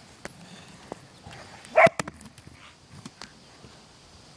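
A dog barks once, short and sharp, a little under two seconds in, with a few light knocks around it.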